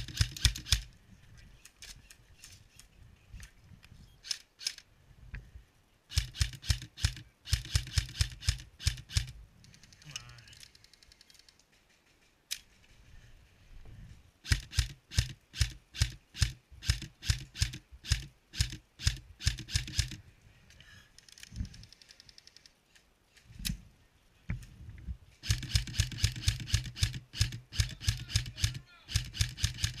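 M4-style airsoft rifle firing close up: strings of rapid, evenly spaced sharp shots, several a second, in four or five bursts of one to five seconds with short pauses between.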